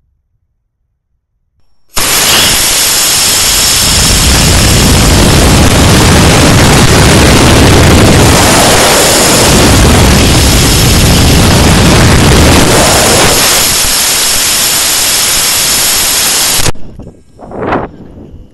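Loud, steady roar on a TVC model rocket's onboard camera: the rocket motor firing and air rushing past in flight. It starts abruptly about two seconds in, eases slightly later on and cuts off sharply near the end.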